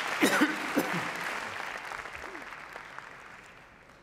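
Audience applauding, fading out over about three seconds.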